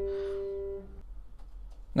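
Upright piano note in the tenor register ringing on after being struck, extremely mellow, and fading away about a second in.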